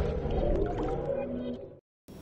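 The tail of a TV channel's intro music, dying away in a reverberant wash and fading out to silence near the end.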